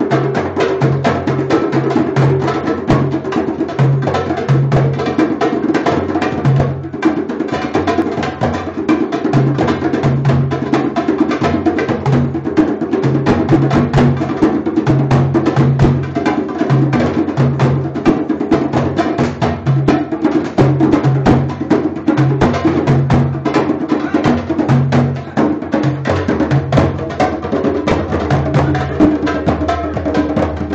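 A group playing hand drums together, djembes and a darbuka, in a fast, steady rhythm of deep bass tones and sharp slaps, with a brief break about seven seconds in.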